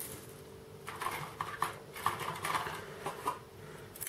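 Plastic model-kit sprues being handled, with a light, irregular clatter and rustle of the styrene frames knocking together for about two and a half seconds.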